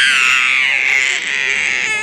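A young child's long, high-pitched squeal of excitement as a spinning fairground ride gets going. It is held at one pitch and breaks off near the end.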